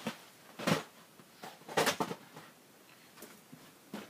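A few scattered knocks and scuffs of someone moving about and handling a box, the loudest about two seconds in, with quiet room tone between.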